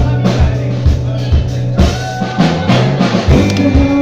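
Live band playing a song: electric guitars over sustained low notes and a drum kit keeping a steady beat of about two hits a second.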